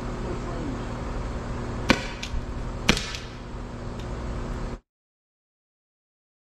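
Byrna SD CO2-powered launcher fired twice, about a second apart, each shot a sharp pop, with a fainter click just after the first shot. A steady low hum runs underneath, and the sound cuts out suddenly near the end.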